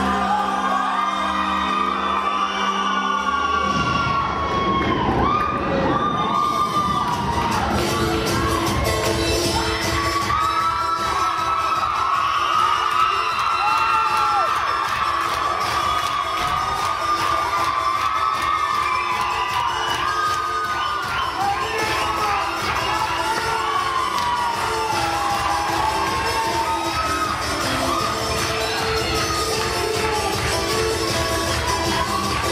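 Many voices shouting and cheering over tinku dance music with a steady beat.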